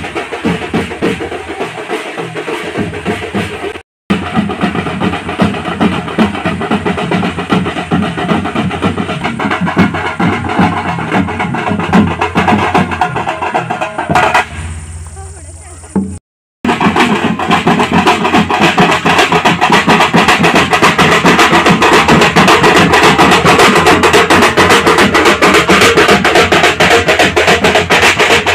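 Several barrel drums beaten with sticks in a fast, steady rhythm, with crowd voices underneath. The sound breaks off briefly twice.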